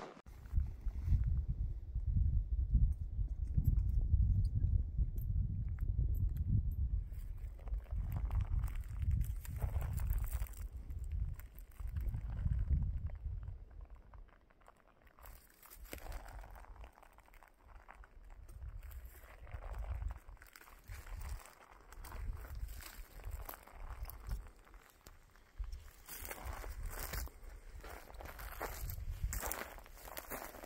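Horses walking on a dry dirt forest trail: scattered crunching hoof steps, under a low gusty rumble on the microphone that is heaviest in the first seven seconds.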